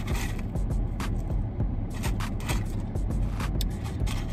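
Hands handling a fast-food burger and fries in their paper wrapping: a run of irregular crinkles and taps over a steady low hum.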